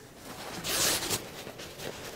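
Nylon kayak-skin fabric rustling as it is pulled down over the frame: one swish lasting about half a second, starting a little past half a second in.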